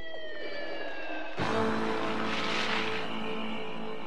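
Cartoon soundtrack music: a thin synthesizer tone gliding slowly downward, then about a second and a half in a music cue sets in with held chords and a brief swelling hiss.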